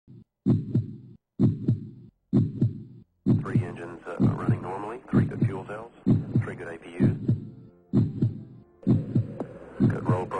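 Heartbeat sound effect: a steady lub-dub double thump about once a second. From about three seconds in, a higher wavering, pitch-bending sound is layered over the beats.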